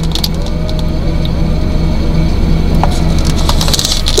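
Steady low hum inside a car cabin under faint background music, with a few light clicks.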